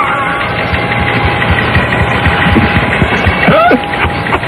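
Several people laughing together in the radio studio after a joke. It sounds thin and muffled, as over AM radio.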